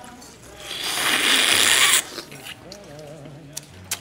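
A loud, wet slurp as a raw oyster is sucked from its half shell, building over about a second and cutting off abruptly.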